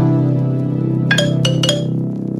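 Background music: a held chord with a few bright, bell-like notes struck a little after a second in.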